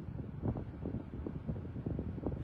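Low, steady background rumble inside a car cabin, with a few faint small clicks.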